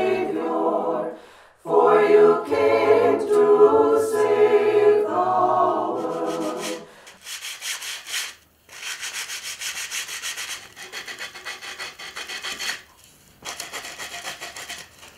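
A choir singing a cappella for the first half, cut off about seven seconds in. Then sandpaper rubbing back and forth on a gesso-coated wooden board in quick, repeated strokes, with a short pause near the end, as the icon surface is smoothed.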